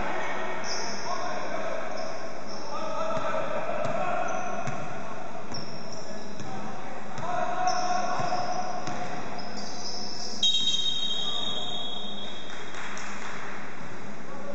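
Basketball game on a hardwood court in an echoing gym: the ball bounces as it is dribbled, and players' voices call out. About ten and a half seconds in, a sharp high tone sounds for over a second, likely a referee's whistle.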